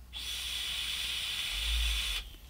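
Steady hiss of a long vape draw through a Footoon Hellixer rebuildable tank atomiser: air pulled in through the airflow and over the firing coils.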